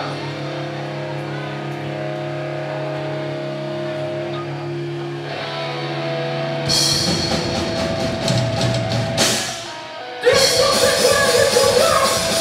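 Live heavy rock band on stage: held, sustained chords drone, then drums and cymbal hits come in about seven seconds in, the sound dips briefly, and the full band crashes in loudly just after ten seconds.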